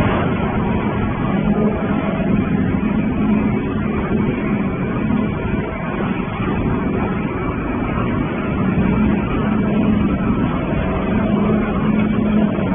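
Recycling-line machinery running steadily, with shredded waste being carried up an inclined belt conveyor: a continuous noisy rumble with a steady low hum.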